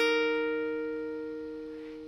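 Clean electric guitar dyad ringing out as a whole note: the 8th fret of the third string and the 11th fret of the second string sounding together, struck just before and fading steadily.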